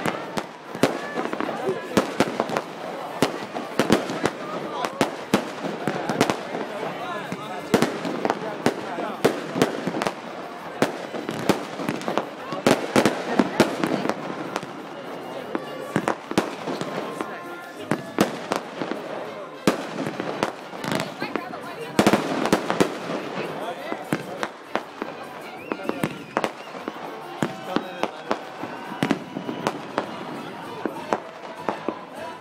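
Aerial fireworks going off overhead in many rapid, irregular bangs and crackles, with voices of a crowd behind.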